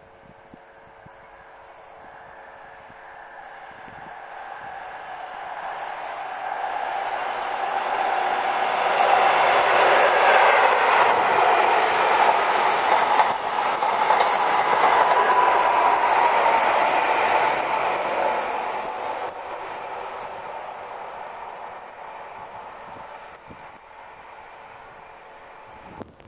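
Network Rail's New Measurement Train, a High Speed Train with Class 43 diesel power cars, passing through without stopping. Its engine and rail noise build over several seconds, are loudest for several seconds as it runs past, then fade as it goes away.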